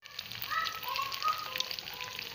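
Hot cooking oil sizzling and crackling steadily as egg-dipped meatball skewers fry in a pan.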